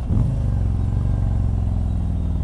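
Harley-Davidson Street Glide's Milwaukee-Eight 107 V-twin engine running under way, a steady low exhaust note with a brief shift in pitch just after the start.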